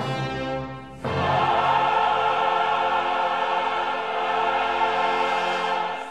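Opera chorus singing with full orchestra: a chord that fades away, then about a second in a loud, full chord held for some five seconds until the next chord breaks in.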